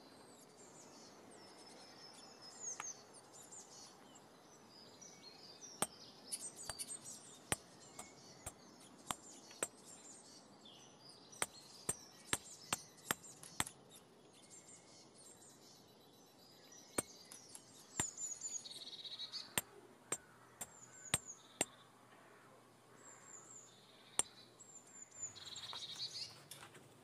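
Birds chirping in the background, with irregular sharp taps and clicks from hand work with leather and tools at a workbench.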